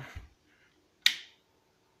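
A single sharp click about a second in: the plastic on-switch of an electric jug kettle being pressed, switching the kettle on.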